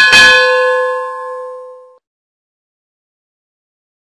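Notification-bell 'ding' sound effect of a subscribe-button animation: one bell strike that rings with several steady tones and fades out over about two seconds.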